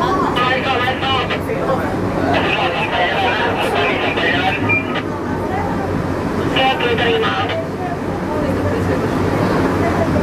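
Passengers talking inside a funicular railway car, over the steady low rumble of the car running up its track.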